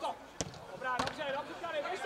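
A football struck hard by a boot: a sharp thud about half a second in and a second knock about a second in. Players' shouts rise right after.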